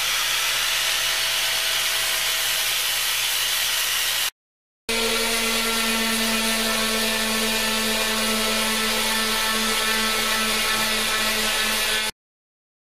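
Angle grinder with a flap disc skimming the surface of a cattle horn, a steady rushing grind that cuts off abruptly about four seconds in. After a half-second gap, a random orbital sander runs against the horn with a steady motor hum and whine.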